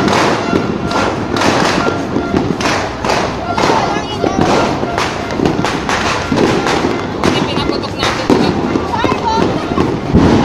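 New Year's firecrackers and fireworks going off in rapid, irregular succession, a dense run of sharp bangs and crackles, with voices calling out.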